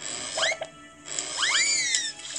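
Cartoon sound effects from an animated children's story app: two whistle-like swoops that rise and then fall, a short one about half a second in and a longer one about a second later, over soft background music.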